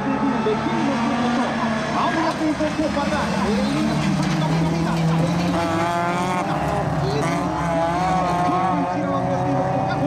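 Several folkrace cars' engines revving hard together on track, their pitch rising and falling as they accelerate and lift, with a commentator's voice over the PA.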